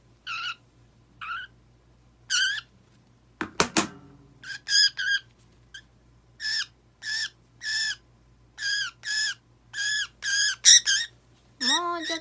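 A budgerigar giving short, harsh squawks over and over, about one or two a second and coming faster toward the end, as it is held in the hand for a nail trim. A brief cluster of sharp clicks comes about three and a half seconds in.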